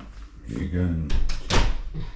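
A voice speaks briefly, then two sharp knocks come close together a little after a second in.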